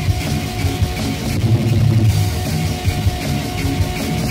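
East German punk rock recording: distorted electric guitar, bass and drum kit playing a dense, driving part, with regular drum hits.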